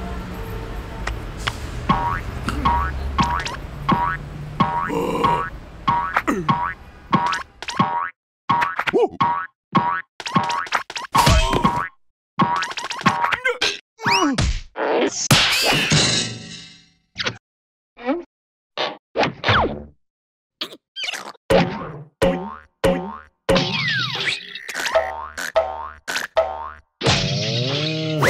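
Cartoon boing sound effects of a coiled metal spring, short wobbling twangs one after another, over music. The first part is a quick, regular run of short ticks; after that come separate boings with brief silences between them, some sliding down in pitch.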